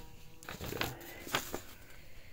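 A sheet of paper rustling as it is handled and lifted, in three short, sharp rustles.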